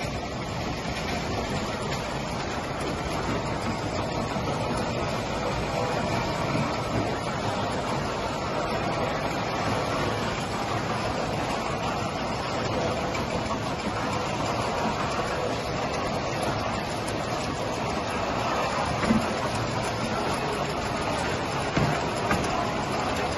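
Steady mechanical running noise of a jerrycan filling line and its slat-chain conveyor. A couple of light knocks come near the end.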